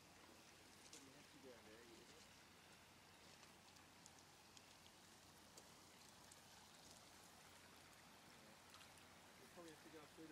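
Faint, steady babble of a shallow stream running over rocks, with faint voices about a second in and near the end.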